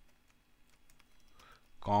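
Computer keyboard typing: a string of faint, separate keystrokes.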